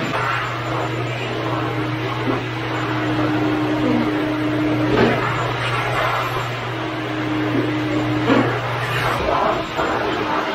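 Wet/dry shop vacuum running steadily as it sucks wash water off a concrete floor, its drone cutting off about nine seconds in. A higher hum comes and goes twice, with a few sharp knocks.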